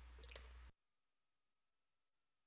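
Near silence: faint room tone with a few small clicks, cut off to dead silence under a second in.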